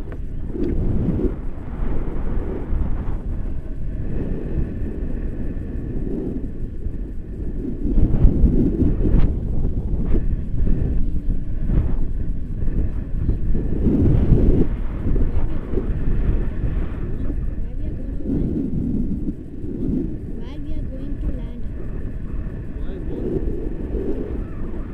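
Wind buffeting the microphone of a camera flying with a tandem paraglider in flight: a loud, gusting low rumble, strongest about eight and fourteen seconds in.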